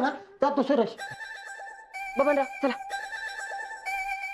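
Telephone ringing: a steady ringing tone that starts about a second in and sets in three times, the last ring fading away.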